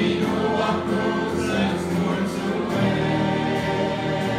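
A mixed choir of young women and men singing a Romanian hymn together, with a strummed acoustic guitar accompanying; the chord changes about three seconds in.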